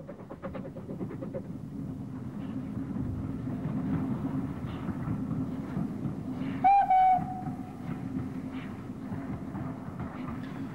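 Steam branch train, a small LBSC A1X Terrier tank engine with its coaches, running with a steady rumble of wheels on the rails. One short steam whistle blast sounds about two-thirds of the way through.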